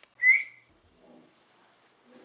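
A single short human whistle, rising slightly and then held for about half a second, a call whistle used to summon a pet.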